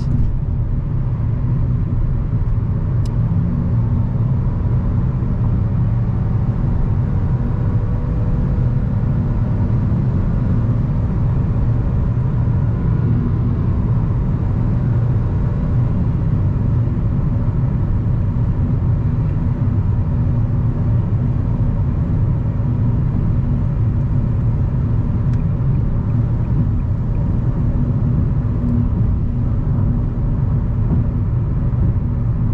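Steady low road and engine drone heard inside a car's cabin while cruising at highway speed.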